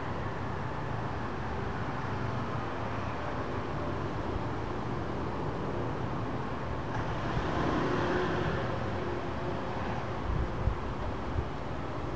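Distant night-time city noise: a steady low rumble that swells with a brighter hiss about seven to nine seconds in. Two short knocks come near the end.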